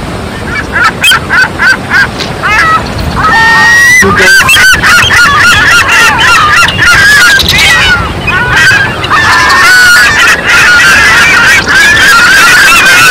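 Gulls calling: a few short separate calls at first, then from about four seconds in a loud, dense chorus of overlapping calls.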